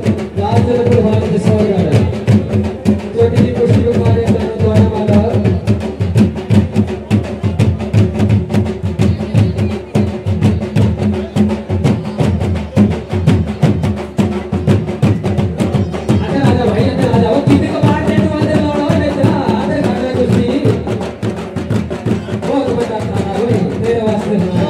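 Traditional folk drumming on dhol, fast continuous beats, with a wavering melody line over it near the start and again about two-thirds of the way through.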